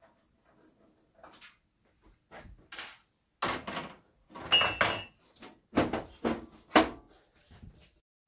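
Sheet-metal side panel of a PC tower case being worked loose and slid off: a run of clunks, scrapes and rattles, the loudest in the second half, with a brief metallic squeak in the middle.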